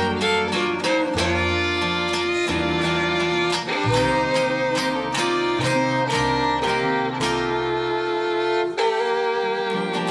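Western swing band playing live: a bowed fiddle carries the lead melody in long, sustained notes over steadily strummed archtop rhythm guitars and an upright bass line.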